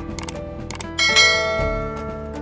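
Subscribe-button animation sound effect: a couple of quick mouse clicks, then a bright bell ding about a second in that rings on and fades, over steady background music.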